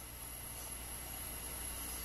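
A pause in speech holding only a steady low hum and faint hiss, the background noise of the recording.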